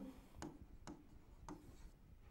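Faint taps and light scratching of a stylus pen writing on an interactive touchscreen board, with three soft clicks about half a second apart.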